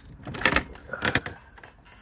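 Handling noise: a few loud scrapes and bumps, about half a second and a second in, as the phone is carried while walking.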